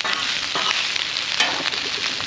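Shredded cabbage and vegetables sizzling in oil on a hot cast-iron Blackstone griddle, a steady hiss, with a few short metal knocks from the spatulas against the griddle.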